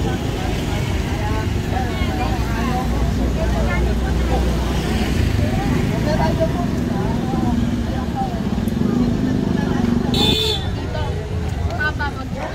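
Busy market street: crowd voices chattering over the steady hum of passing cars and motorcycles. About ten seconds in, a nearby engine hum cuts off and a brief high-pitched sound rings out.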